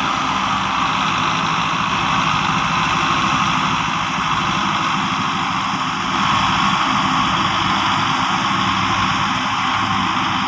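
Two diesel tractors, a Belarus 510 and a Massey Ferguson 375, running steadily under load as they pull a heavily loaded sugarcane trolley.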